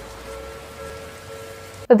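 Rain falling, an even hiss with a faint sustained musical tone underneath; it cuts off abruptly just before the end.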